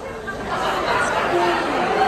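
Crowd chatter: several voices talking over one another, growing louder about half a second in.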